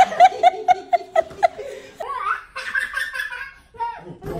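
A person laughing hard in quick repeated bursts, about four a second, for the first second and a half, then more laughter mixed with voices.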